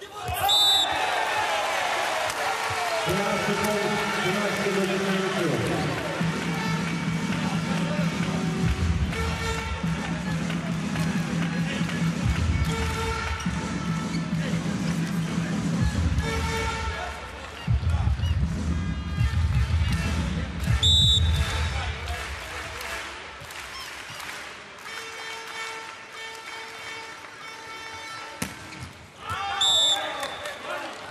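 Volleyball arena sound: a short referee's whistle blast just after the start, then loud arena music with a deep, steady bass over crowd noise for about twenty seconds. A second whistle comes a little past two-thirds through, followed by sharp ball strikes and crowd noise, and a third whistle at the very end.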